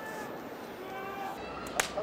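A sumo wrestler slapping his own body during his pre-bout routine: one sharp, loud slap near the end, over the murmur of an arena crowd.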